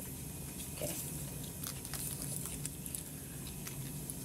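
Faint handling noise: a few scattered small clicks and rustles as equipment is moved, over a steady low room hum.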